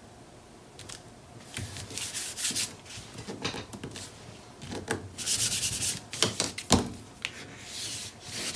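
Paper being smoothed and burnished by hand and with a bone folder: irregular dry rubbing strokes of hands and tool over glued paper strips on cardstock. The strokes start about a second and a half in, and there is one sharp knock about two-thirds of the way through.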